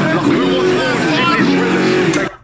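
A loud drill rap track with a rapped vocal over steady bass, playing from the documentary.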